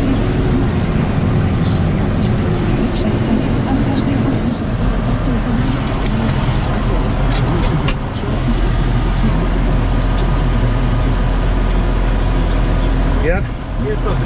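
John Deere tractor's engine running steadily under load, heard inside the cab while it pulls a seed drill across the field. A voice comes in near the end.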